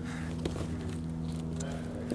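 Steady low hum of background room tone, with one faint click about half a second in.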